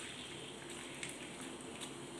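Faint, steady bubbling and hiss of a pot of red liquid at a rolling boil on a gas stove, as a thin stream of lemon juice is poured into it.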